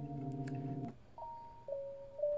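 GarageBand's software organ, a Vintage B3 'Bebop Organ' patch, sounds a held chord of MIDI notes that cuts off just under a second in. After a short gap a thinner single tone starts on a higher note and steps down to lower ones as the instrument patch is switched.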